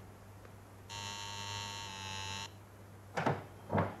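Electric doorbell buzzer pressed once, buzzing steadily for about a second and a half, followed near the end by two short sounds.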